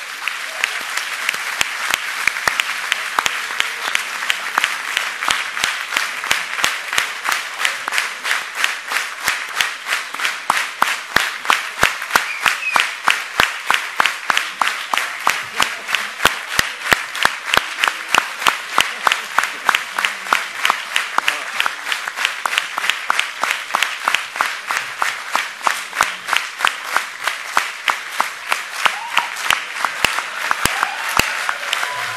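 Large audience applauding, the clapping settling a few seconds in into rhythmic clapping in unison at about two and a half claps a second.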